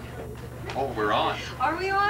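A high-pitched human voice that slides in pitch, starting under a second in, with no clear words. A steady low hum runs underneath.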